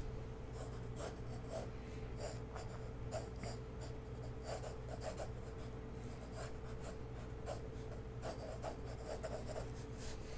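Pencil sketching on paper: many short, scratchy strokes in quick irregular succession, over a steady low hum.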